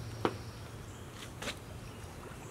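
Low steady hum with two light clicks, about a quarter second and a second and a half in, as an air hose and its fitting are handled.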